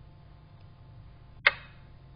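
A single sharp click about one and a half seconds in, with a brief ringing tail, over a faint steady low hum.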